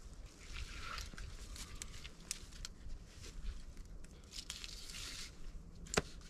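A lineman's belt and saddle harness being hooked up and adjusted around a tree trunk: rustling of strap and clothing with scattered sharp clicks of buckles and clips.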